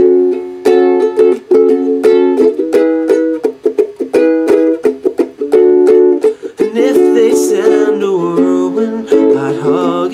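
Lanikai ukulele strummed steadily in chords, loud and close.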